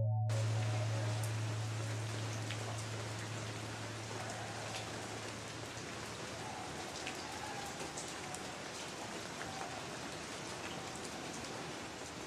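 Steady rain falling, an even hiss with scattered drip ticks. A low held musical tone fades away under it by about halfway through.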